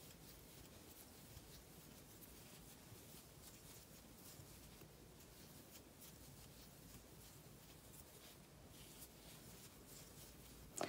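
Near silence with faint, soft scratching and rustling of cotton yarn as it is worked with a crochet hook.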